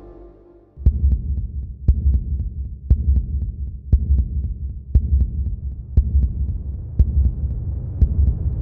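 Countdown sound design: a deep, low pulsing drone that starts suddenly about a second in, marked by a sharp tick about once a second in time with the seconds counting down, with fainter ticks in between.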